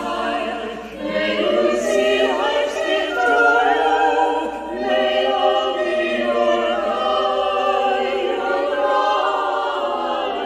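A small group of voices singing a sung blessing together, on the lines "May you see life's gifts to you. May love be your guide."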